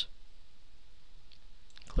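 Steady faint hiss of room and microphone noise, with a few faint clicks just before the end.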